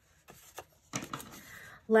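Faint rustling and light ticks of cardstock being handled and folded by hand, a little louder from about a second in.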